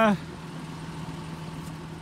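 Jeep Liberty engine running steadily, a constant hum held at raised revs by a brick on the gas pedal.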